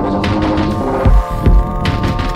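A steady drone of several held tones, with two short deep thuds about a second in, half a second apart.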